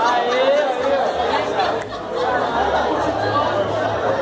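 Several young people's voices calling out a greeting in Portuguese together, overlapping with lively chatter.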